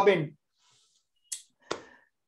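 A man's speaking voice ends a phrase, followed by a pause broken by a short hiss and then a single sharp click.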